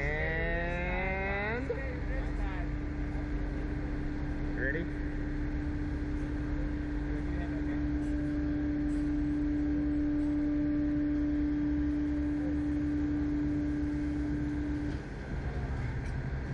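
A slingshot ride's electric winch motor winds up with a rising whine, then holds one steady hum for about thirteen seconds before cutting off near the end, over a constant low rumble. It is tensioning the launch cords before the capsule is fired.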